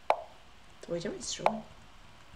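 Lichess move sounds: two short plopping clicks, one just after the start and one about a second and a half in, each the signal that a move has been played on the online board.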